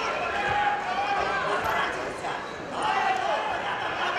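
Several voices shouting over one another in a large, echoing hall, the way coaches and spectators shout at a wrestling bout, with a few low thumps underneath.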